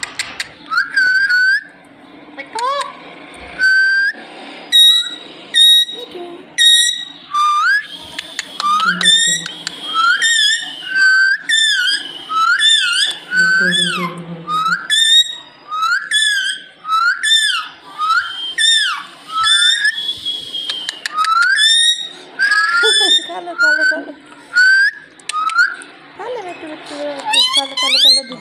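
A rose-ringed parakeet giving a long run of short whistled chirps, each one rising and falling in pitch, about one to two a second.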